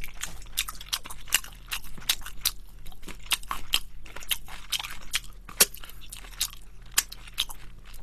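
Close-miked crunching and chewing of Korean yangnyeom (sauced) fried chicken: irregular crisp crackles of the coating as it is bitten and chewed.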